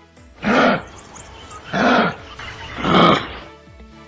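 Kangaroo calls: three short, rough, gruff calls about a second apart, over steady background music.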